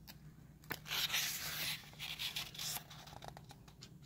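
A page of a printed art book being turned by hand: a papery rustle starting about a second in, followed by a few lighter rustles as the page is laid flat.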